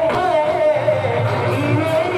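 Live Sambalpuri orchestra music through a PA: a vocalist singing a melody over the band, with a bass line coming in about a second in.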